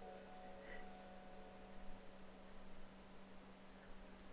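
Quiet room tone with a steady low hum; a faint ringing tone fades away during the first second.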